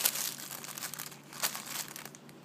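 Clear plastic squishy packaging crinkling as the bagged toys are handled, in irregular rustles with a louder crackle at the start and another about a second and a half in.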